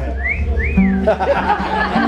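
A person whistling a blues phrase, two quick notes that rise and fall, over a held low guitar note.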